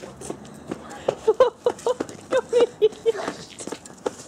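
A person's voice making a quick run of short, same-pitched vocal sounds, about eight in a row, without clear words.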